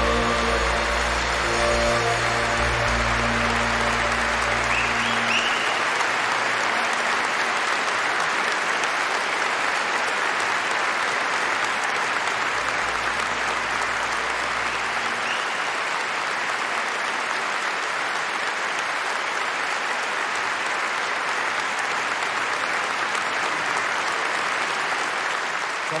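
A large concert-hall audience applauding steadily. The song's last held chord from the band and klapa dies away over the first few seconds.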